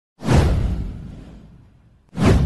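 A deep whoosh sound effect for an animated title intro. It starts suddenly about a fifth of a second in and fades away over about a second and a half.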